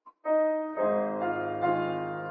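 Piano playing a hymn accompaniment: after a brief pause, chords enter about a quarter-second in and change about every half second.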